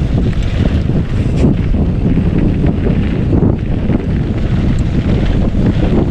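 Wind buffeting an action camera's microphone while riding a mountain bike down a rough, rocky dirt trail, with the bike rattling and clattering over the bumps throughout.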